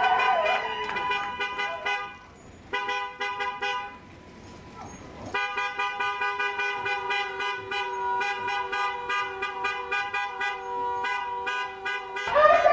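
Vehicle horn held down in long steady blasts, cutting out briefly about two seconds in and again for about a second around the four-second mark.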